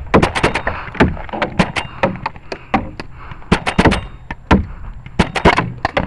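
Paintball markers firing in quick bursts of several sharp pops, with short gaps between bursts, some fired right at the microphone.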